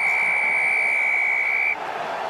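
Referee's whistle, one long steady blast lasting under two seconds that signals the try awarded, over crowd noise.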